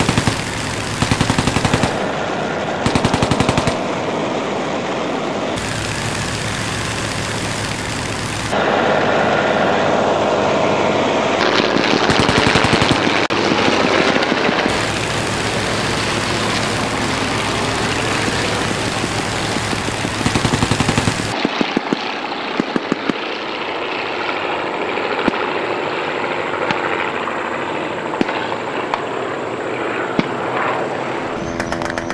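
Replica WW1 fighter's aero engine running steadily, with short bursts of rapid machine-gun fire several times. After about two-thirds of the way through, the engine sound turns thinner, with only scattered shots.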